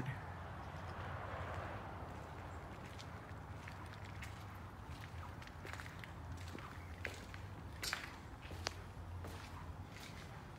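Quiet footsteps on a concrete path and tiled porch, with a few sharper clicks in the second half, over a low steady outdoor hum.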